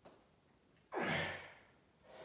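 A man's forceful exhale of effort, about half a second long and starting about a second in, as he strains through a heavy weight-plate curl.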